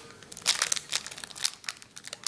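A trading-card pack wrapper crinkling and crackling in a run of quick, irregular crackles as hands work it open.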